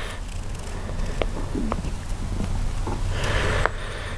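A marker scratching as it traces around a paper template held on a wood block, with a longer stroke near the end, a few light taps, and a steady low hum underneath.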